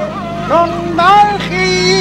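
Music starts: a singer holds long notes that slide between pitches, over a steady low drone.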